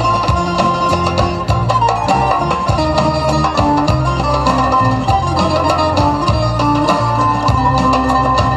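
Instrumental break in the accompaniment of a Bulgarian folk song: a quick plucked-string melody over a steady, repeating bass line, with no singing.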